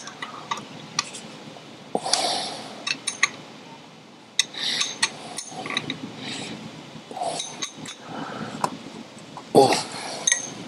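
A wrench working on the bolts that hold a Model T brake drum to its drive plate as they are tightened down: irregular metal clinks and short scraping rasps, with a louder one near the end.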